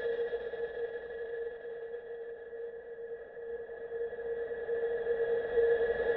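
Sustained electronic synth tones of a dance remix's intro, a steady held chord that fades down around the middle and swells back up near the end.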